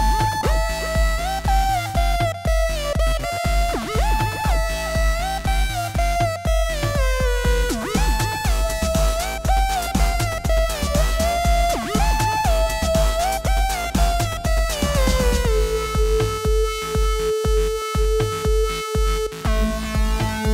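Electronic beat from a Reason session: a synth lead whose pitch slides between notes, played on a keyboard over a steady kick and bass. About fifteen seconds in, the lead slides down and holds a single note.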